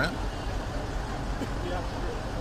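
Steady low rumble and hiss of fire apparatus engines running at a fire scene.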